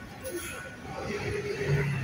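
Indistinct voices of a busy restaurant, with one person's pitched voice rising above them in the second half.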